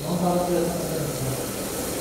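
A man's voice answering briefly and faintly from some distance, over a steady low hiss of kitchen background.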